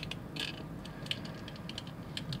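Light clicks and a short scrape of a plastic pry tool working at the stuck body-retaining tab of a small Choro-Q pullback toy car, the tab's groove too tight to let it pop out. The scrape comes about half a second in, then scattered small clicks follow.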